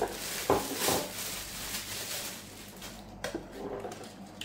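Clear plastic bag crinkling and rustling as a battery charger is pulled out of it, with a few knocks from handling near the start.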